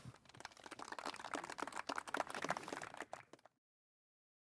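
A small outdoor audience applauding. The clapping builds over the first second and cuts off abruptly about three and a half seconds in.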